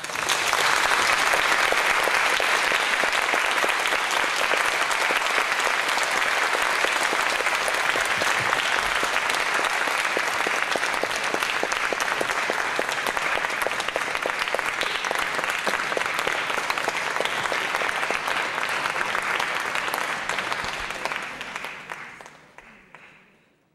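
Audience applauding steadily in a concert hall, starting suddenly and dying away near the end.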